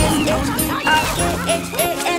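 A cartoon tiger growl sound effect starting suddenly at the beginning, over children's song music with singing.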